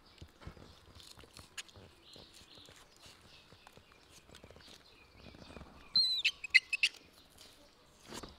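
Faint scraping and light clicks of a knife peeling a jicama. About six seconds in comes a quick burst of loud, high chirps that starts with a falling note.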